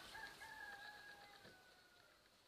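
Faint distant rooster crowing: one long held call that steps down a little in pitch near the end.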